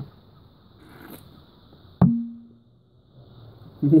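Quiet drinking from an aluminium energy-drink can, with one sharp click about halfway through followed by a brief low hum.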